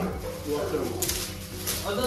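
Short murmured, cooing voice sounds with the crinkle and rustle of wrapping paper being torn off a framed gift.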